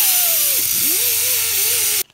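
Handheld grinder with a small disc grinding down welds on a car's steel body panel: a loud, hissing grind with a motor whine. The whine drops in pitch under load about midway, then picks back up and holds.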